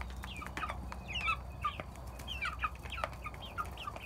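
A flock of young chickens, about ten weeks old, calling with many short, high chirps and peeps while they feed, with a few sharp taps among the calls.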